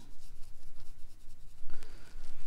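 Round watercolor brush dragging wet paint across textured watercolor paper: a soft, scratchy brushing.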